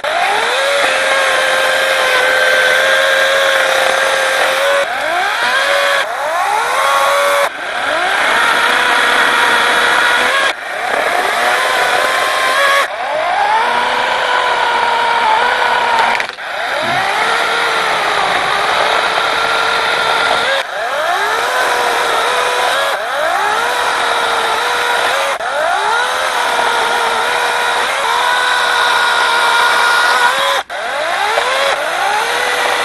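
Lynxx 40-volt battery chainsaw with a brushless motor cutting wood: a steady electric whine that sags in pitch as the chain bites and sweeps back up as it frees, again and again, breaking off abruptly several times.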